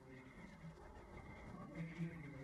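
Faint, low voices: quiet dialogue from the show playing in the background, with a faint steady high tone under it.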